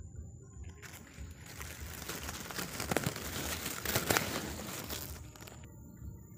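Leaves and plant stems rustling and brushing against the microphone as someone pushes through dense forest undergrowth, building louder toward the middle, with two sharp snaps about three and four seconds in.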